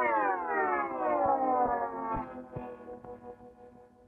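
A cartoon shrinking sound effect: one long electronic tone that glides slowly down in pitch, levels off and fades away near the end.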